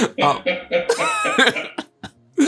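Men laughing in several short bursts, mixed with a cough.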